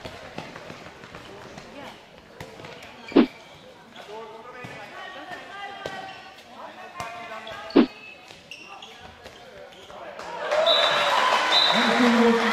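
A handball bouncing hard on a sports hall floor: two loud bounces about four and a half seconds apart, with a few lighter knocks between, over voices in the hall. Near the end the crowd noise rises.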